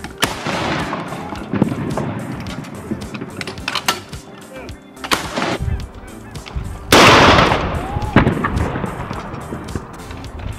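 Saluting gun firing a blank round, a loud report about seven seconds in followed by a long echo rolling across the water.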